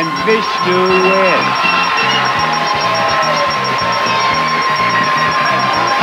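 Game-show winner's music cue with a steady high electronic tone held through it, starting at once and cutting off after about six seconds, over a cheering studio audience.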